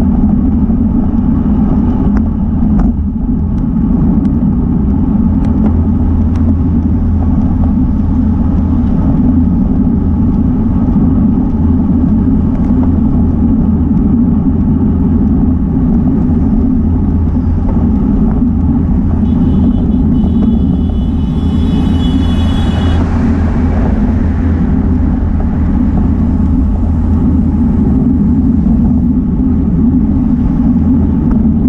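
Steady low rumble of wind buffeting the microphone of a bicycle-mounted camera on a moving road bike, mixed with tyre and road noise. About twenty seconds in there is a brief high whine, then a short hiss.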